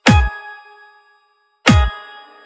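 Electronic dance music: two heavy hits about a second and a half apart, each a deep falling bass boom layered with a bright bell-like stab that rings out.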